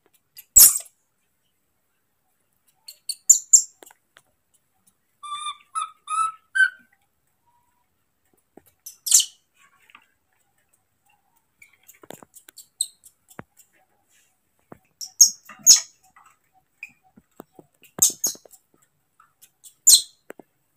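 Baby macaque calling: short, shrill squeaks scattered through, and a run of four chirping calls about five to seven seconds in, the last one rising.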